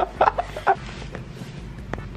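A young man's voice in a few short staccato bursts in the first second, then quieter, with a single sharp click near the end.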